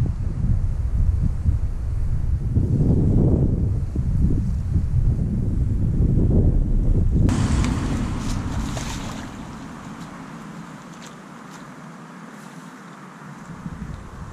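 Heavy wind buffeting the microphone for the first half. After a sudden change about seven seconds in, it gives way to a quieter hiss with a few short splashes as a hooked carp is played close to the bank.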